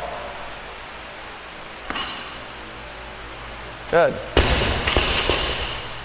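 A loaded barbell with rubber bumper plates dropped onto a rubber gym floor after a squat clean: a heavy thud a little over four seconds in, a second bounce half a second later, and the plates and collars rattling and ringing as it settles.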